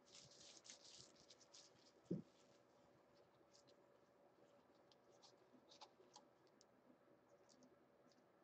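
Near silence with faint scratching and rustling, busiest in the first two seconds, and a single soft knock about two seconds in, followed by a few scattered faint ticks.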